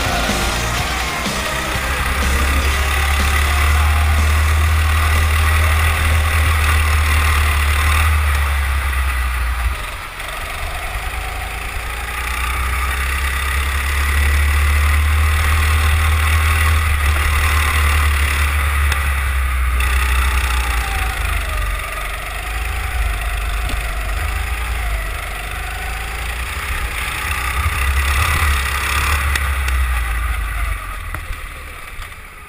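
Racing kart's small engine running at speed, heard from a camera mounted on the kart, with wind and road noise. The engine note drops briefly twice, about ten and twenty seconds in, as the kart lifts off through corners.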